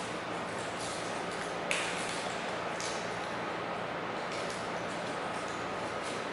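Steady room hum and hiss with a few short, sharp clicks scattered through; the loudest click comes a little under two seconds in.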